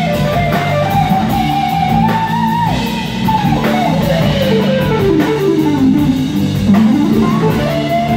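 Live jazz-fusion band playing, led by an electric guitar line over bass guitar and drum kit. The guitar holds high notes, then plays a long descending run over about three seconds and climbs back up near the end.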